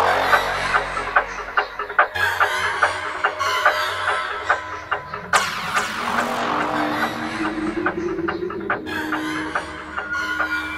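Old-school Goa psytrance music: steady bass under repeating sweeping synth effects and scattered sharp percussive hits. A synth line slowly rises in pitch from about six seconds in.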